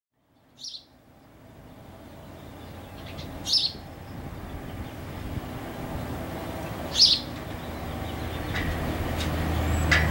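Small bird chirping, three short high chirps a few seconds apart, over a low hum that grows steadily louder.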